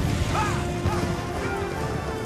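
Film soundtrack: held orchestral notes under battle sound effects, with crashing noise and a few short cries that rise and fall in pitch.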